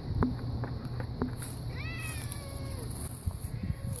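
A long-haired domestic cat, part Maine Coon, meowing: one call about halfway through that falls in pitch, followed by a fainter, shorter call near the end.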